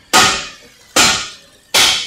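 Three loud, sharp knocks, each ringing briefly as it fades, evenly spaced about 0.8 seconds apart.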